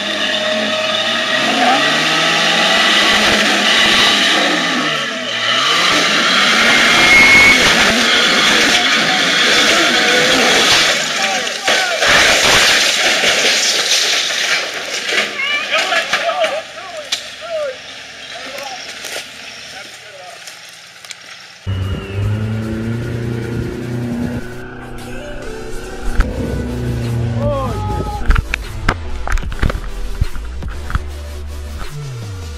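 Off-road SUV engine revving as it crawls over rocks, with people's voices mixed in. After a sudden cut, low rumbling wind and handling noise on a tumbling camera.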